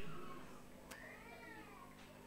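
A faint high-pitched call that rises and then falls over almost a second, just after a single sharp click, while the echo of the voice dies away.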